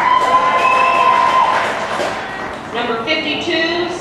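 Stadium public-address announcer reading out player names, the voice echoing over the field. At the start, between names, there is a noisy spell with a steady whistle-like tone held for about a second and a half; the voice resumes near the end.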